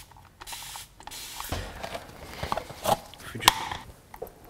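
A short hiss about half a second in, then several light knocks and clicks as a plastic dye bowl and tools are handled on a glass-topped cutting board.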